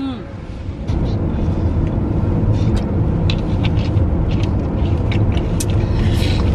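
Road noise inside a moving car's cabin: a steady low rumble of tyres and engine that grows louder about a second in, with scattered faint short ticks over it.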